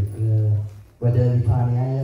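A man chanting a liturgical scripture reading aloud on a held reciting pitch, pausing briefly about a second in, then carrying on.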